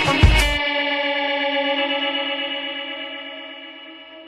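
Rock band music ending on a last hit about half a second in, then an effects-laden electric guitar chord left ringing and slowly fading: the close of a song.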